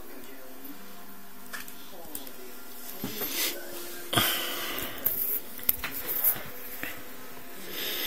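Handling noise from a smartphone being picked up and moved in the hand close to the microphone: irregular rustling with a few sharp clicks in the second half, over a faint background murmur.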